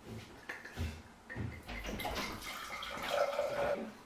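Wine poured from a glass bottle into a glass, gurgling for about two seconds, after a few light knocks of glass being handled in the first second.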